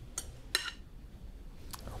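A metal serving utensil clinking lightly against a glass mixing bowl as herb salad is scraped out onto a platter, about three short clicks with the middle one the loudest.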